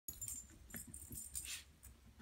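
Faint light metallic jingling of a small dog's collar and leash hardware as she trots on a leash across carpet, over soft low footfall rumble.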